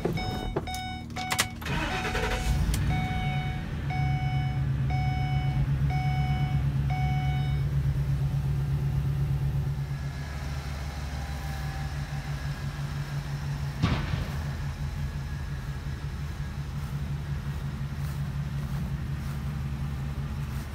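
Ford E-350 box truck engine cranked and started about two seconds in, then idling steadily. A dashboard warning chime beeps at an even pace over the start and stops about seven to eight seconds in. One sharp click comes near fourteen seconds in.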